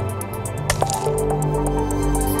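Minimal electronic music from a software drum machine and synthesizers: sustained synth notes over a sparse drum pattern, with a short percussive blip gliding down in pitch a little under a second in.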